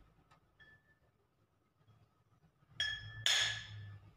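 A glass wine bottle struck twice with a hammer, two sharp clinks close together near the end, the first ringing. Both blows are meant to crack the bottle, which has not yet cracked.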